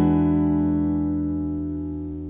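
A single guitar chord, struck just before, ringing out and slowly fading away.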